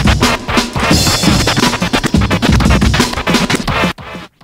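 Hip hop DJ track: turntable scratches over a drum beat, cutting off abruptly near the end.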